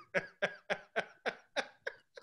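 A man laughing hard in a rapid run of short breathy bursts, about three or four a second, close to the microphone.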